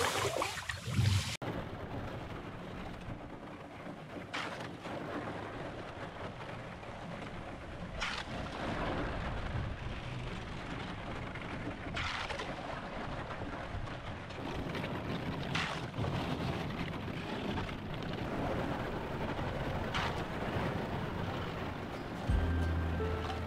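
Canoe paddle strokes through thin sea ice, one about every four seconds, with a steady crackling and crunching of ice fragments against the paddle and the wooden canoe between strokes.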